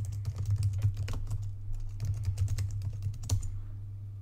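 Fast typing on a computer keyboard, a quick run of key clicks that ends with a last sharper click about three and a half seconds in. A steady low hum runs underneath.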